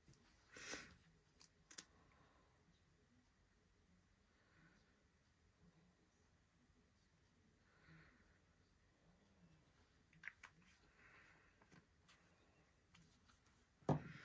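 Near silence with a few faint clicks and soft rustles from small plastic ink re-inker bottles being handled, with a sharper click at the very end as a bottle is set down.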